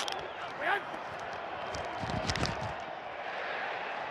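Steady stadium crowd noise picked up on a football player's body microphone. There is a short grunt just under a second in, and a cluster of dull thuds near the middle as the player is in contact on the field.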